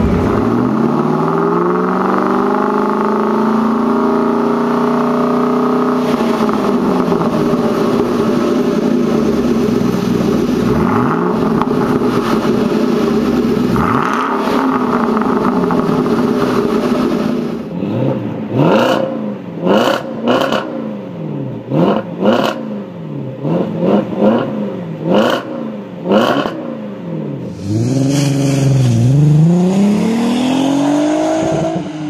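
2014 Shelby GT500's supercharged 5.8-litre V8 revving through a Borla exhaust. The revs are raised and held for many seconds, then it gives a string of about a dozen quick, sharp rev blips. Near the end a different engine, an Audi A3's 3.2 V6, revs up.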